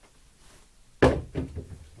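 Craps dice knocking on the table: one sharp knock about a second in, then a few lighter knocks as they tumble and settle.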